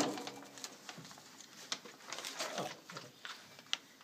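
Handling noises: a loud knock at the start, then scattered clicks and rustling, with a brief squeaky scrape past the middle and a sharp click near the end, as a jar of grinding grit is handled and opened over the glass mirror blank.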